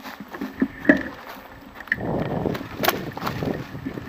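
Handling noise on a small action camera as it is moved: a couple of sharp knocks, and a rough rustling from about halfway through.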